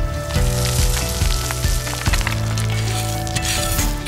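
Gravel pouring and spreading, a dense patter of small stones, over steady background music.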